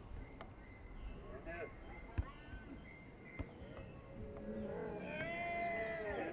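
Distant shouts and calls of players on a football pitch, with a few short, sharp knocks of the ball being kicked. A louder, drawn-out shout comes near the end.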